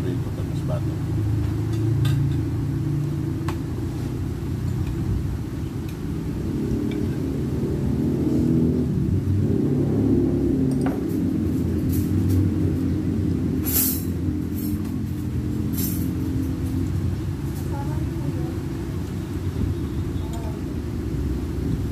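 A steady low rumble mixed with muffled, indistinct voices, and a few sharp clinks of spoons and forks on plates about two-thirds of the way through.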